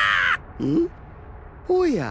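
Anime character voices shouting without words: a high, harsh cry that breaks off about half a second in, a short low grunt, then a cry that falls in pitch near the end.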